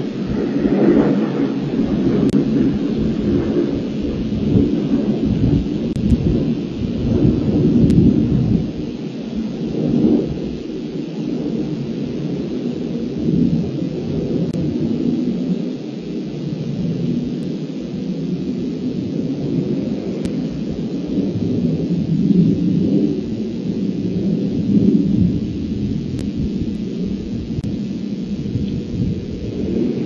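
Continuous low rumbling noise that swells and fades irregularly, loudest in the first several seconds.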